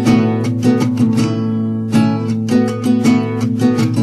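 Folk-rock band playing an instrumental passage with no vocals: acoustic guitar strummed in a steady rhythm over sustained bass notes.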